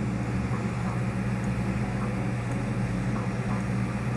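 Glassblowing bench torch burning steadily: a constant rushing noise over a low hum.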